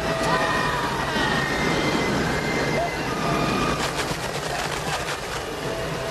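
Film soundtrack effects: a dense, steady noise with several short, held electronic-sounding tones at different pitches.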